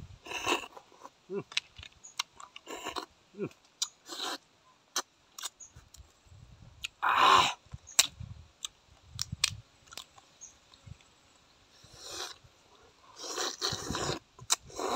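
Close-up eating sounds: small rice-field crab shells cracked and pulled apart by hand, giving sparse sharp cracks, with chewing and sucking at the crab meat. One louder burst comes about seven seconds in, and a cluster of sounds near the end.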